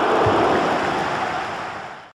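Intro sound effect: a loud, steady rushing noise with a low thud about a quarter second in, fading out near the end.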